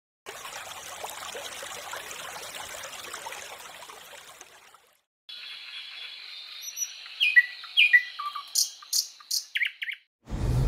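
Birds singing: short falling whistled notes and quick sharp chirps over a thin steady high tone, getting busier towards the end. It follows a steady hiss that fades out about halfway through.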